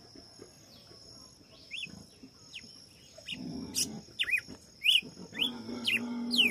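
Red-cowled cardinal (galo-de-campina) singing short, sharp whistled notes that slide up or down. The notes are sparse at first and come faster from about halfway in, over a steady high cricket trill.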